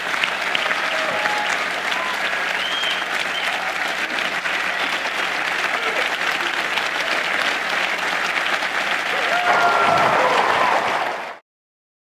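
A large audience applauding loudly at the end of a speech, with a few voices cheering among the claps. The applause cuts off suddenly about eleven seconds in.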